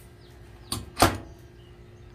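Wicker-clad access door on the base of a propane fire pit table being swung shut: a light click, then a sharp clack about a second in as it closes against the metal frame.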